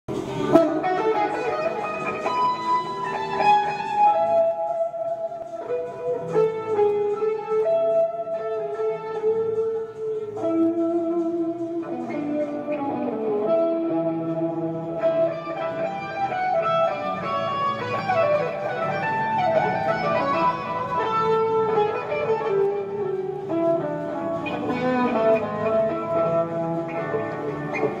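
Electric guitar played through an amplifier: a lead solo of single-note runs and held notes, with pitch bends and slides.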